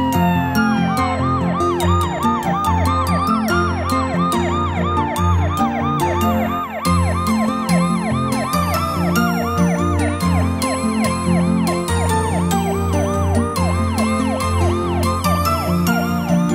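Cartoon ambulance siren in a fast rising-and-falling wail, about three cycles a second, over background music with a bass line.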